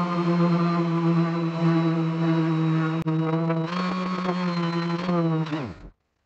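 Makita random orbital sander running steadily with a loud, even hum while sanding a small wooden piece. Near the end it is switched off and winds down, its pitch falling quickly to a stop.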